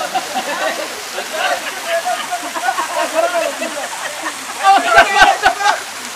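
Water splashing in a swimming pool as a swimmer thrashes through it and climbs out by the ladder, with men's voices shouting over it. The voices grow louder about five seconds in, with a few sharp knocks.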